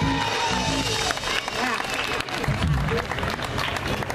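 Crowd applauding, with music and voices underneath.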